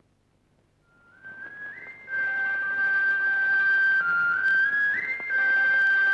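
Film background music: a high, whistle-like lead holds long notes and steps up in pitch over sustained chords. It fades in about a second in and grows loud after two seconds.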